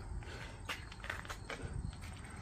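Footsteps of a person walking, a series of light steps a few tenths of a second apart in the second half, over faint outdoor background noise.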